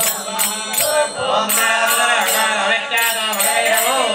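A group of women singing a devotional bhajan in unison, with small hand cymbals struck over and over to keep time.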